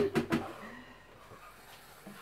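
A woman's voice trailing off in the first half-second, then a quiet pause of room tone.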